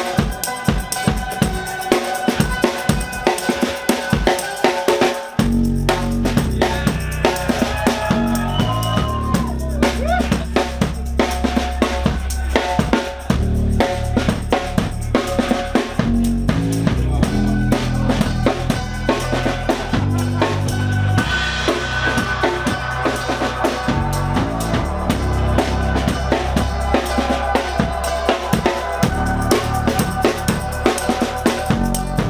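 Live drum kit played in a dense, busy beat, with kick, snare and rimshots, over electronic backing with sustained tones. About five seconds in, a deep bass comes in and carries on under the drums.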